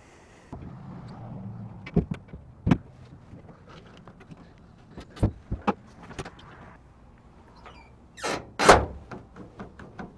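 A 2002 Toyota Tundra's tailgate being put back on and shut: a few sharp metallic clicks as its support cables are hooked on, then a loud double clunk about eight seconds in as the tailgate closes and latches.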